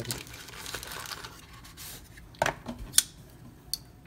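Cardboard knife box and its paper insert rustling as a folding knife is handled and packed away, followed by a knock and a sharp click about half a second apart, then a fainter tick.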